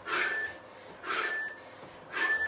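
A man breathing hard from exertion: forceful breaths of about half a second each, coming about once a second, each with a faint whistle.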